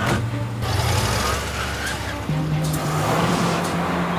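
Cartoon sound effect of a motor vehicle's engine running steadily, over background music.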